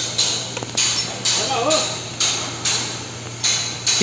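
Hydraulic bolt-tensioning pump setup running: a steady low hum under hissing pulses about two a second.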